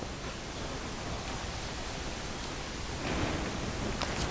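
Steady background hiss from the recording's noise floor, with a faint brief rustle about three seconds in.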